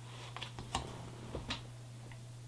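Faint clicks and light taps of a cardboard insert card being handled, over a steady low hum.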